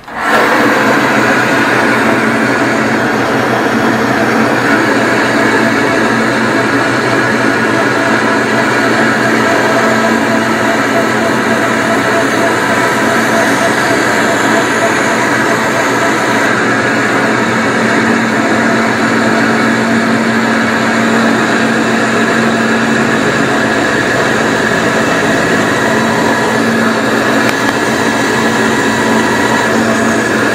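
Bandsaw switched on, its motor coming up to speed at once and then running steadily, the blade cutting through a block of scrap wood as it is fed by hand.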